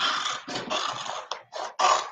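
Kitchen scissors cutting through a silkscreen stencil transfer: about three crisp snips in quick succession, then a brief voice-like sound near the end.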